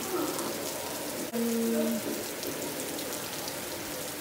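Steady rain falling, an even hiss that runs on throughout, with a short held vocal sound about a second and a half in.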